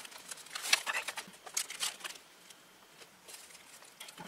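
Faint paper rustling and light taps as cardstock tags are slid into a paper envelope pocket and journal pages are handled, dying away for about a second past the middle before resuming softly.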